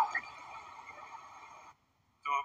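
A sustained ringing sound made of several steady tones, fading away and then cutting off abruptly near the end. It comes from the soundtrack of a news clip played on a screen.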